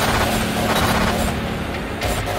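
Electronic glitch sound effect: a dense, loud crackling static noise over a low steady hum.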